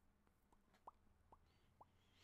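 Near silence, broken by four faint, short plops about half a second apart, each a quick upward-sweeping blip; the second is the loudest.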